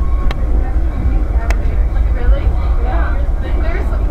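Steady low rumble of a moving vehicle heard from inside the cabin, with voices talking in the background and a couple of short clicks.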